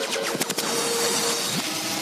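A produced sound effect in a radio commercial break: a loud noisy rush with gliding tones that eases off toward the end.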